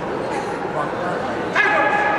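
Voices murmuring in a large echoing sports hall, then about one and a half seconds in a sudden loud, high-pitched shout rings out and holds to the end.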